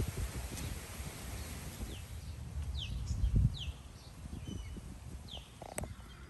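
Birds calling: a handful of short, falling chirps over a low, uneven rumble, with a sharp click near the end.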